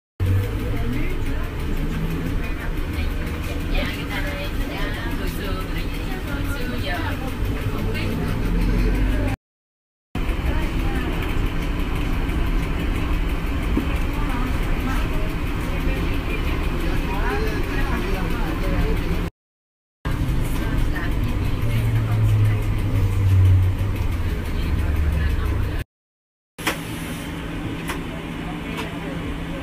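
Inside a moving NAW trolleybus: a steady low electric hum and road noise. The sound cuts out briefly about every ten seconds where recorded segments are joined.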